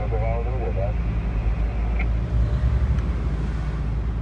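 Lorry's diesel engine running steadily, heard from inside the cab as it drives slowly, a low rumble throughout. A brief voice is heard right at the start.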